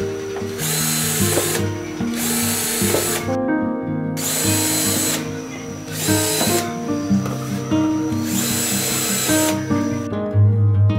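Makita cordless drill running in about six short bursts of roughly a second each, working on plastic bottles, over background music.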